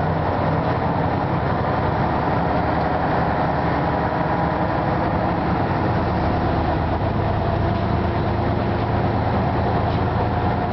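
Ikarus 260 city bus's diesel engine running steadily while the bus is under way, heard from inside the cabin, with a steady wash of road noise.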